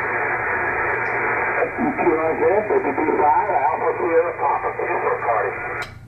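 Icom IC-7300 HF transceiver's speaker giving out narrow, muffled single-sideband band static, with a weak, garbled voice of a distant station coming through the noise from about two seconds in.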